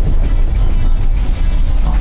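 Cabin noise of a Mitsubishi ASX driving on a dirt track: a steady low rumble of engine and tyres on the unpaved road, with background music underneath.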